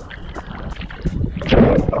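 Sea water sloshing and splashing around an action camera held at the surface while a swimmer strokes through choppy water, with scattered droplet clicks and wind rumbling on the microphone. About one and a half seconds in, a louder rushing wash of water as the camera dips under the surface.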